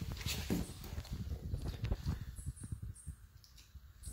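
Small dog eating pieces of burger patty off a tile floor: quick, soft chewing and mouth noises, busiest in the first two and a half seconds and thinning out after.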